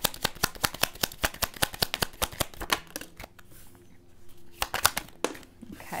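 A deck of Lenormand cards being shuffled by hand: a quick, even run of card clicks about five a second that stops about three seconds in. A few scattered card taps follow near the end as a card is drawn and laid down.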